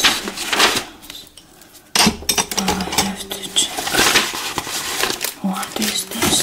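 Loose sheets of paper being handled and shuffled close to the microphone, with rustles and crackles that get busier about two seconds in. A soft, murmured voice comes and goes under the paper.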